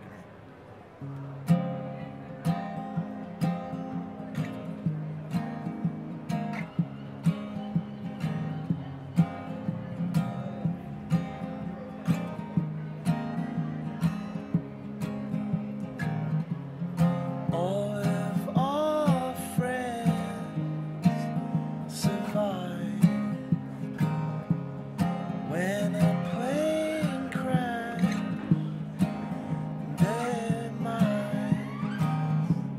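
Acoustic guitar played live in a steady, evenly accented rhythm, starting about a second in. A man's voice comes in singing over it about halfway through.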